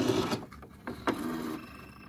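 ITBOX i52N Lite electronic punch card machine printing the time onto a time card, a mechanical buzzing that is loudest in the first half-second, with a second spell about a second in.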